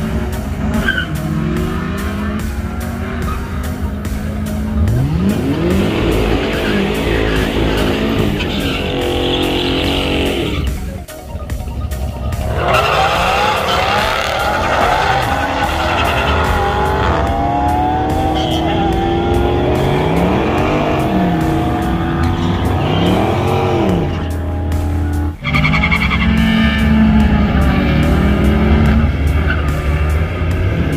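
Drag-racing cars launching and accelerating hard down the strip, engine pitch climbing and dropping as they rev through the gears, with tyre squeal. The sound breaks off sharply twice, once about a third of the way in and once near the end.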